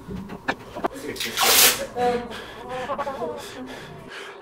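Indistinct human voices, not clearly worded, with a loud hiss about a second and a half in and a few sharp clicks near the start.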